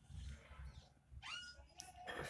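Near silence: faint room tone, with a brief, faint high-pitched gliding sound a little past a second in and a faint click near the end.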